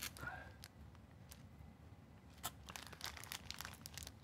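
Faint crinkling of small plastic zip bags of wooden game pieces being picked up and handled, with scattered short crackles.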